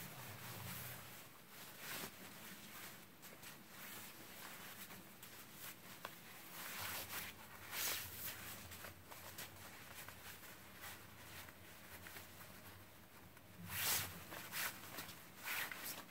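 Faint rustling and swishing of a necktie's fabric being wrapped, crossed and pulled through into a four-in-hand knot against a shirt collar, in soft scattered strokes, the loudest near the end as the knot is drawn up.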